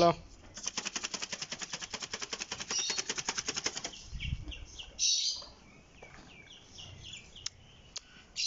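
White chickens being herded: a fast, even fluttering patter of about ten beats a second lasting some three seconds, then a string of short, high cheeps from the chicks.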